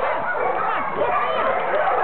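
Many dogs barking and yipping at once in a continuous, overlapping din.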